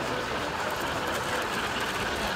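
O gauge model of a Norfolk and Western J-class steam locomotive running past on three-rail track, a steady mechanical rumble of wheels and motor on the rails.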